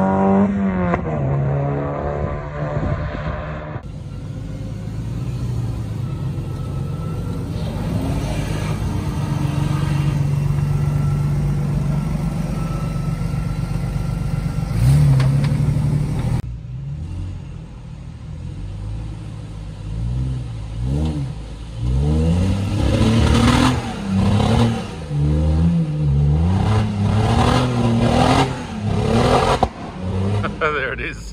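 A car engine on a race circuit, its pitch falling in the first second as it goes by, then running steadily. About halfway through it gives way to a 4WD's engine revving hard in repeated rising and falling bursts as it claws up a steep muddy bank, with some clatter.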